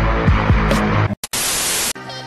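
Bass-heavy music with a thumping beat that cuts off about a second in; after a brief dropout, a burst of loud, even static hiss fills the last half second and stops abruptly.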